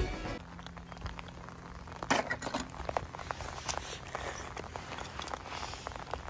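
Film music cuts off just after the start, then light scattered clicks and taps of die-cast metal toy cars being handled and set down on a table, over a faint steady low hum.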